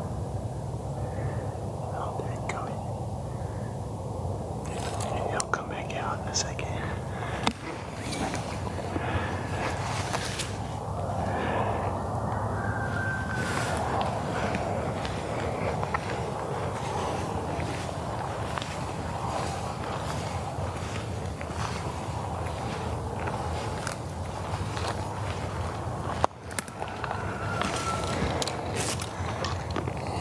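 Whispered voices over rustling and crunching in dry grass, with many short sharp crackles scattered through it.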